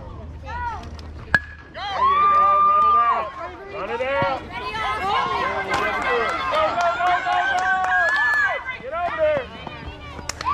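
A bat hits a pitched ball about a second in with a single sharp crack and a brief ringing ping. Spectators and players then shout and cheer loudly for several seconds as the hit plays out.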